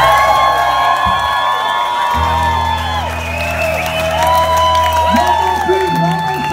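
Live Balkan-style band (saxophone, electric guitars and bass) holding long sustained notes as the tune ends, with a low bass note joining about two seconds in. The audience is whooping and cheering over it.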